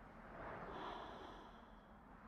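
Faint, airy whoosh that swells about a second in and then fades, with a thin high tone over its peak: a film sound effect for a ghostly streak of light sweeping past a house.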